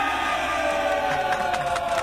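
A long held sung note, several voices or a voice with backing, drifting slowly down in pitch and wavering near the end, as in a chant or jingle inserted into a radio report.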